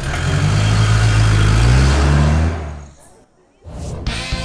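SUV engine pulling away and accelerating, a loud low drone that rises slightly in pitch, then fades out about three seconds in.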